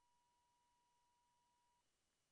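Near silence: a pause between spoken words, with only a barely audible steady tone that stops shortly before the end.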